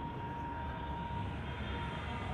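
Marker pen writing on a whiteboard, a faint thin squeak held for most of the stroke and stopping near the end, over a steady low background rumble.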